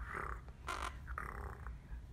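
Blue Quaker parrot (monk parakeet) making three short, scratchy calls.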